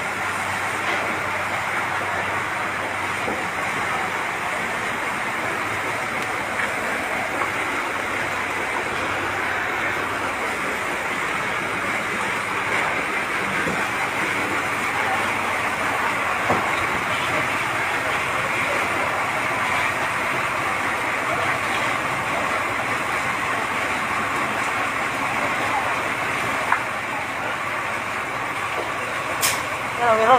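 Fire trucks and water tankers running their engines and pumps: a steady, unbroken din, with a single sharp click near the end.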